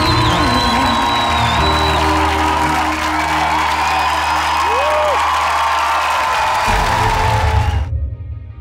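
Studio audience cheering and applauding over the held closing chord of the band's accompaniment. It cuts off abruptly near the end.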